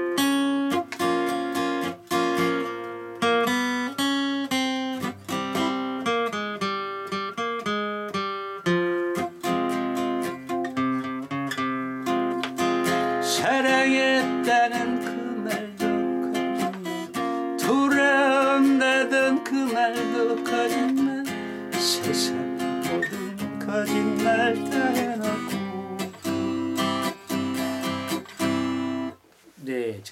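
Steel-string acoustic guitar played solo in F minor, strummed in a quick go-go rhythm with sharp percussive strokes under the chords; the playing stops about a second before the end.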